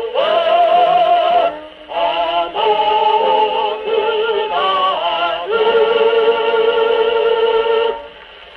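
Singing from a 1942 78 rpm shellac record played acoustically on a Columbia G-241 portable wind-up gramophone, the sound thin with little high treble. Short sung phrases lead into a long held final note from about halfway through, which stops suddenly at the end.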